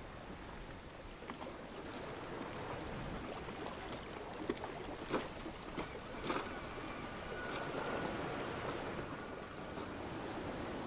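Sea water lapping and small waves washing around a drifting block of ice, a steady wash of water. A few sharp clicks or knocks come in the middle, the loudest about five seconds in.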